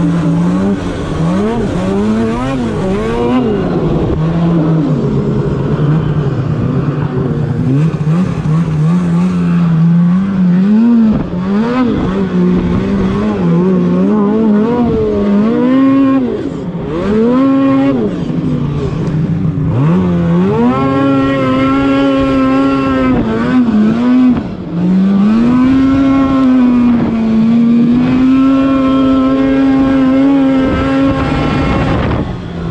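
Snowmobile engine running hard under a rider climbing a snowy course. Its pitch rises and falls with the throttle, holds steady low early on and higher near the end, and dips sharply once about two-thirds through.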